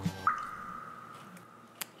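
Comic sound effect added in editing: a single droplet-like tone that springs up sharply and fades over about a second and a half, with a short click near the end.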